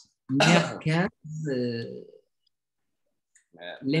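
A man coughs twice and then clears his throat with a longer voiced rumble.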